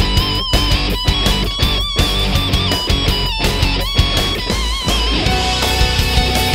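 Background rock music: an electric guitar lead holding notes with vibrato over drums keeping a steady beat.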